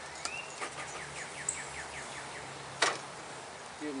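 A bird singing a quick trill of about ten short descending notes, then a single sharp click or knock near three seconds in.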